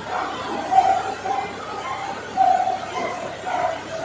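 Indistinct voices of a gathered congregation in a large hall, with short higher voice sounds coming and going and no clear words.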